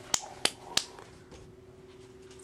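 Three short, sharp clicks within the first second, then a faint steady hum.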